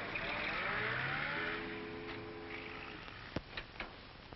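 A car engine revving up as the car pulls away, its pitch rising and the sound fading. Steady held tones follow, then a few sharp clicks near the end.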